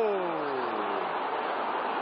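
Steady stadium crowd noise in a football broadcast, cut off in the treble. In the first second a man's shout slides down in pitch and fades.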